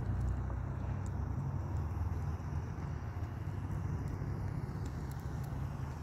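A steady low rumble with a faint hiss above it, and a few faint clicks.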